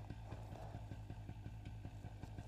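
Paramotor engine idling steadily on the ground, a low hum with a fast, even pulse.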